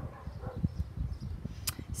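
Low, uneven rumble and soft knocks of a plastic concealer tube being handled close to the microphone, with one short sharp click near the end.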